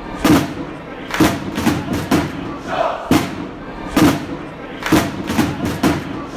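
Outro sting of heavy drum-like thuds, roughly one a second and uneven, over the noise of a chanting football crowd.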